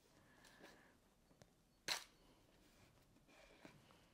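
Near silence with faint handling sounds as tape is pressed down over a plastic stencil on a card, and one short sharp click about two seconds in.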